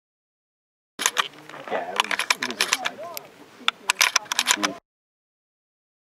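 Brief snippet of people's voices talking, mixed with many sharp, irregular clicks or knocks. It cuts in suddenly about a second in and cuts off abruptly near five seconds, with dead silence on either side.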